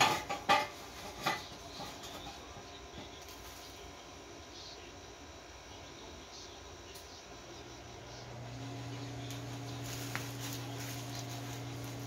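A few light clicks and knocks of metal in the first second or so, then quiet workshop noise, and about two-thirds of the way through a steady low machine hum starts and holds.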